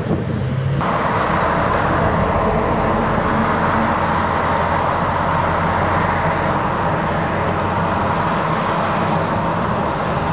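Tugboat diesel engine running steadily, under a loud hiss that comes in suddenly about a second in and then holds.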